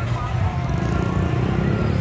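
A small motor vehicle's engine running with a steady low rumble, with voices faint in the background.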